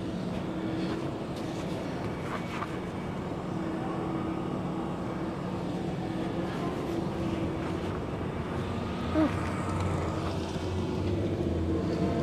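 An engine running steadily in the background, a low, even hum with no change in pitch, with a short brief sound about nine seconds in.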